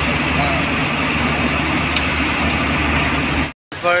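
Bus engine running steadily with road noise, heard from inside the moving bus. It cuts off suddenly near the end, and a man's voice follows.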